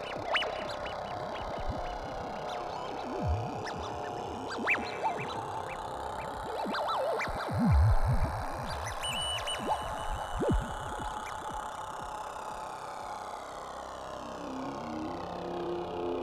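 Electronic drone from a VCV Rack software modular synthesizer patch: a sustained drone with a slowly sweeping shimmer in the upper range, rising and then falling. Short downward-swooping blips break in every few seconds, the loudest about eight seconds in.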